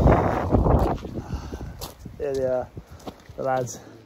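Wind buffeting the camera microphone for about the first second, followed by a man's voice speaking two short phrases.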